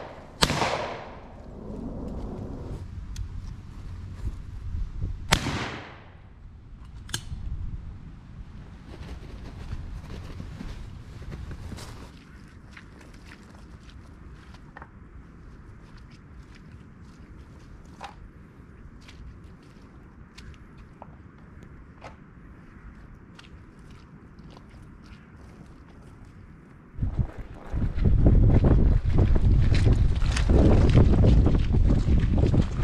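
Two shotgun shots, about half a second in and about five seconds in, each ringing away briefly. Near the end, wind buffets the microphone loudly.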